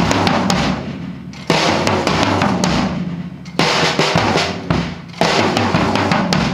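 Acoustic drum kit played in a repeating fill pattern: quick snare and tom strokes, with a cymbal crash struck about every two seconds and left ringing.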